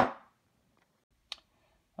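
Two short metallic clicks from handling the steel halves of the disassembled parallel-jaw pliers: a sharp one right at the start with a brief ring, and a fainter one about a second and a half later.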